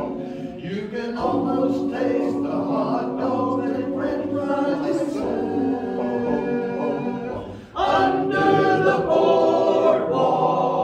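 Men's barbershop chorus singing a cappella in close four-part harmony, with sustained chords. A short break comes a little before the end, then the chords come back louder.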